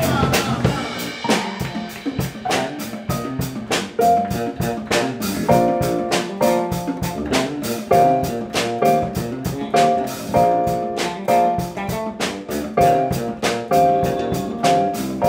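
Live band playing an instrumental passage: drum kit keeping a steady beat on the hi-hat, electric bass underneath, and keyboard chords coming in about four seconds in as short repeated stabs.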